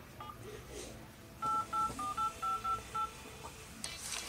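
Phone keypad dialing tones as a number is keyed in on a smartphone: a quick run of about eight short two-tone beeps, starting about a second and a half in.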